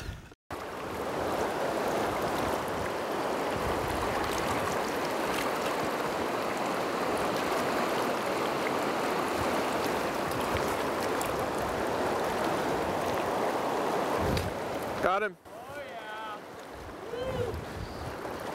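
Steady rushing of a fast, shallow river's current over a rocky riffle, even in level, stopping abruptly about fourteen and a half seconds in. In the last few seconds a man's voice calls out briefly.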